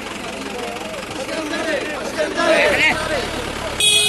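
Police jeep engine idling under several people talking over one another, the low engine rumble strongest in the second half. Near the end comes a brief, sharp, high-pitched burst.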